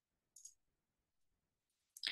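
Near silence, with one faint short click about half a second in.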